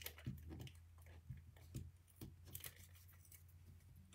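Faint, scattered light clicks and rustles of cardstock pieces being handled and pressed down as a small punched paper circle is glued onto a card, over a steady low hum.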